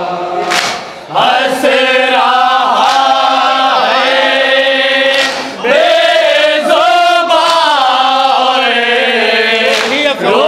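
A group of men chanting a noha, a Shia mourning lament, together in unison. The chant starts about a second in, breaks off briefly about halfway through, and then resumes.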